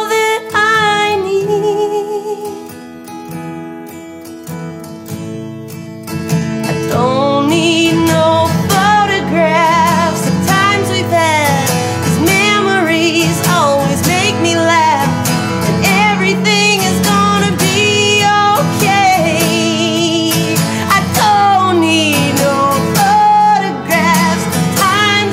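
A woman singing over acoustic guitar in an acoustic blues song. After a short sung phrase the guitar carries on more quietly for a few seconds, then about six seconds in the voice comes back strong, with long sliding, wavering wordless lines over the guitar.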